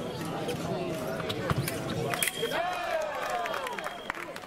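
Foil fencers' feet stamping on the piste, with sharp clicks of the blades. About two seconds in, a steady high electronic tone from the scoring apparatus signals a touch. Voices and a long shout sound over it.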